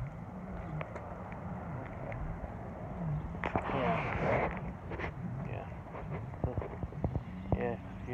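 A distant engine runs steadily, its low hum wavering up and down in pitch. A short rush of wind noise comes about halfway through.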